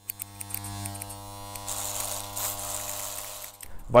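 Electric hair clipper buzzing steadily, with a hissier edge joining about halfway through, then cutting off just before the end.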